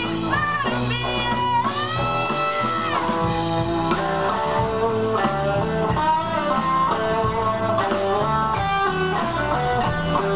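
Live blues band playing, led by an electric guitar with sustained, bent notes over the band's backing.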